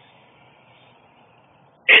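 Faint steady background hiss with no distinct event, then a man's voice starts just at the end.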